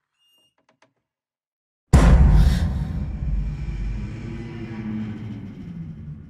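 A few faint ticks in near silence, then about two seconds in a sudden loud, deep trailer impact hit that fades slowly into a low rumbling drone.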